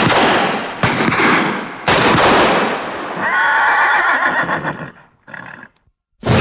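A horse neighing: three loud, harsh blasts in the first two seconds, then a long wavering whinny from about three seconds in that dies away near the end.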